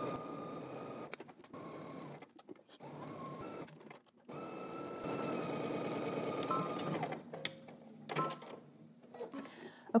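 Domestic sewing machine stitching a seam through woven fabric, its motor running at a steady pitch in two runs: one for about the first two seconds, and another from about four seconds in to about seven seconds in. Between and after the runs there are pauses with light clicks of handling.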